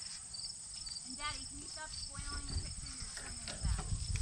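Insects chirping in a steady chorus: a high, even buzz with short, regular chirps about three a second, typical of crickets.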